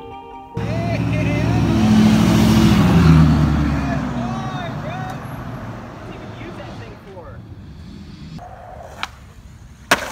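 A motor vehicle driving past close by, its engine swelling and then fading away as its pitch drops. A sharp knock comes just before the end.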